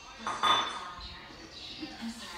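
A single clink, like dishes or a metal utensil, about half a second in, ringing briefly as it fades.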